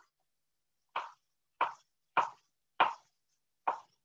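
Kitchen knife cutting zucchini into chunks on a cutting board: five short knocks, about one every half second or so.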